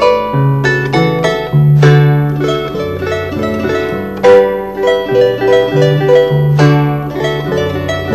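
Harp playing a lively instrumental piece: a plucked melody and chords over a moving bass line.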